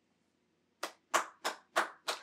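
One person clapping their hands: four sharp, evenly spaced claps, about three a second, starting almost a second in.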